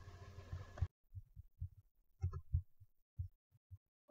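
Faint background hum with soft low thuds that cuts off abruptly about a second in. After that, near silence broken by a few faint, irregular low thuds.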